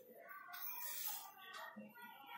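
A whiteboard marker faintly squeaking and scraping on the board as a word is written.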